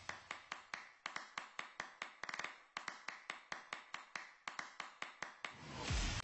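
A rapid, even run of sharp ticks, about five a second, from the sound design of an animated logo intro.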